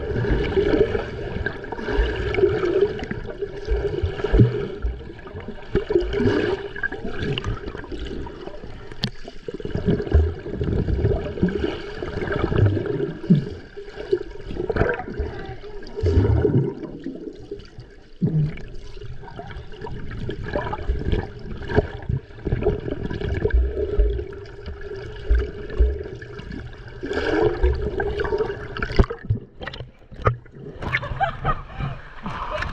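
Water sloshing and bubbling heard muffled from a camera held underwater, as swimmers move through the water beside it, with frequent irregular low thumps.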